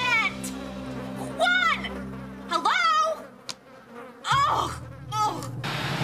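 Cartoon sound effect of flies buzzing, several passes that rise and fall in pitch, over background music that fades out about halfway through.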